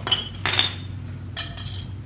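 Old, heavily rusted brake pads and their metal hardware clinking against each other and against metal as they are handled: three quick bursts of sharp clinks, each with a short ring.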